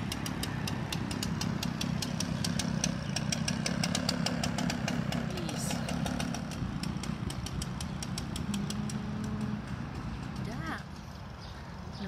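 Backpack leaf blower's small engine running at a steady drone, which falls away about ten seconds in.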